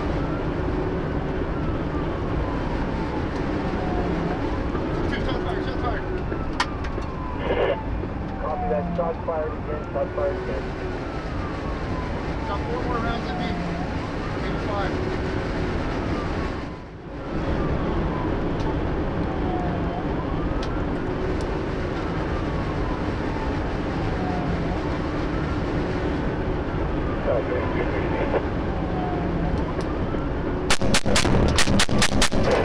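Police car siren on wail, a tone rising and falling about every four and a half seconds, over the heavy road and wind noise of a patrol vehicle at pursuit speed. The sound dips out briefly past the middle.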